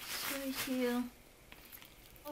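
Tissue paper rustling as it is pulled off a leather handbag's chain handles and tossed aside, with a short murmur from a woman's voice over it. The rustle stops about a second in.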